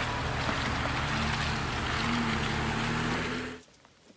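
Jeep Wrangler engine running at low speed as it crawls along a muddy track, under a steady rushing noise. It cuts off suddenly near the end.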